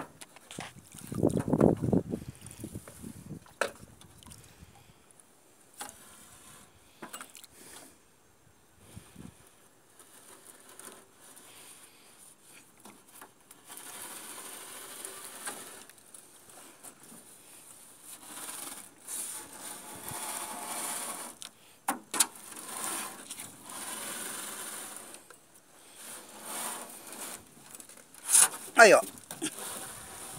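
Cast net being hauled in by hand over the side of an aluminium boat: the net and its line scrape and rub against the hull, with scattered sharp knocks and clicks. A brief louder low rumble comes about a second and a half in.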